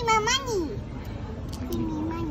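A young child's short, high-pitched wordless vocal sound that rises and falls, a little like a meow, followed near the end by a second, lower one.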